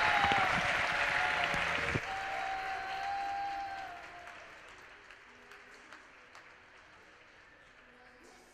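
Audience applauding, loud at first and dying away over the first four or five seconds, leaving a low room background.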